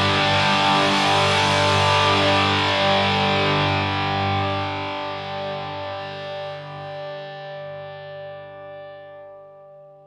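A distorted electric guitar chord with bass, the final chord of a punk/post-hardcore song, left ringing out. It holds steady for about four seconds, then slowly dies away toward silence.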